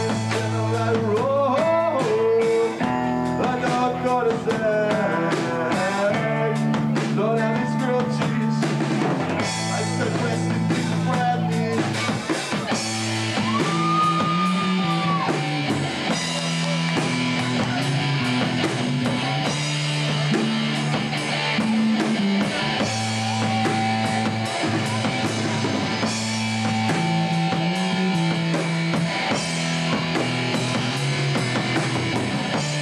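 Live rock band playing: electric guitars over a drum kit, the low chords changing every few seconds. A wavering melodic line runs through the first several seconds, and a long held high note comes about halfway through.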